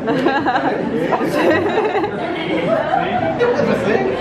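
Overlapping chatter: several people talking at once, with no other sound standing out.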